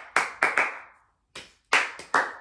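A person clapping her hands: three quick claps, a short pause, then two more.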